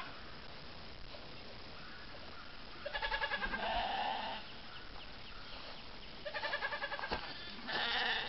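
Ewes and young lambs bleating: a few short, quavering calls, one about three seconds in with a lower call overlapping it, another about six seconds in, and one at the end.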